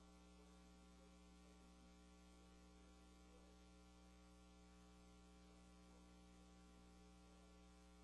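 Near silence with a faint, steady electrical mains hum on the recording, unchanging throughout.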